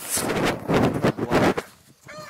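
Footsteps crunching on loose creek gravel, a few steps over about a second and a half, then stopping.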